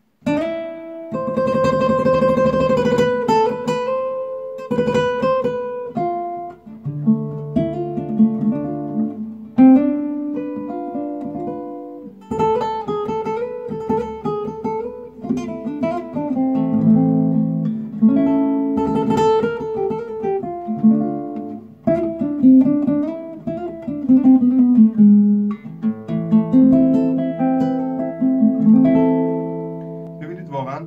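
Angel Lopez nylon-string cutaway flamenco guitar played through its built-in pickup and an amplifier. It opens with strummed chords, then moves to a fingerpicked passage of melody over bass notes. The amplified tone is one the player finds true to the guitar's natural acoustic sound.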